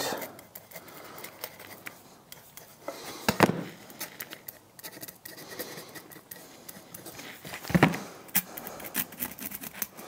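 Pencil scratching on pine 2x4 boards as labels are written on them, with scattered small ticks and two louder knocks, about three and a half and eight seconds in.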